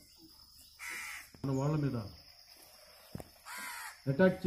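A crow cawing twice, once about a second in and again near the end, with a man speaking briefly over a microphone in between.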